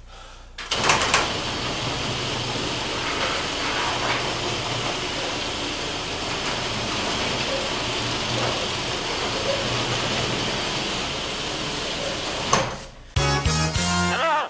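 Electric garage door opener running as the garage door closes: a steady mechanical rumble that starts with a clatter just under a second in and stops with a clunk about twelve seconds later. A different, louder sound with a pitch cuts in near the end.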